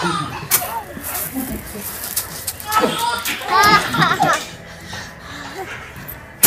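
Babies and small children babbling and laughing in high, excited voices, loudest about three to four seconds in.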